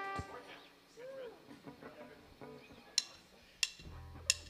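A band's closing chord dies away. A quiet gap follows with faint voices and stray instrument sounds. Near the end come two sharp clicks a little over half a second apart, the start of a drummer's count-in.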